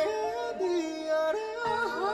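Live singing of a Korean fusion gugak (traditional-meets-pop) song over instrumental backing: a vocal line of held, slightly wavering notes that step up and down in pitch.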